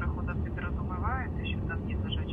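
Quiet voices talking in snatches over a steady low rumble.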